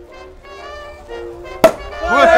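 Soft music with held notes, then near the end a single sharp, loud pop of a champagne cork being released from the bottle.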